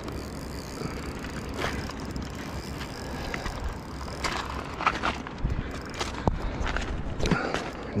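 Spinning reel being wound and its drag working while a hooked trout is played, with scattered clicks and handling noise over a low rumble.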